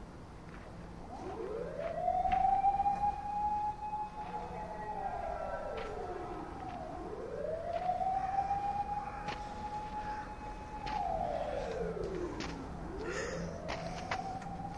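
A siren wailing in slow cycles: its pitch winds up over about a second and a half, holds for a few seconds, then slides back down, twice over, with a third rise starting near the end.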